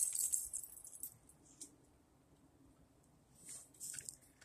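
Coffee stout being poured from a can into a glass: a high fizzing hiss of beer and foam in the first second or so that fades away, then a little more fizz near the end.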